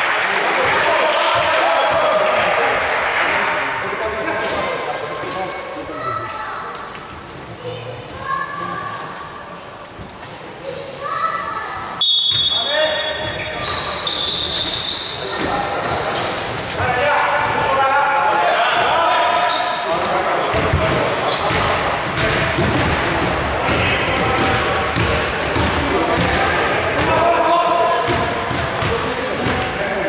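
Basketball bouncing on a wooden indoor court during live play, with echo from a large sports hall, amid voices on and around the court.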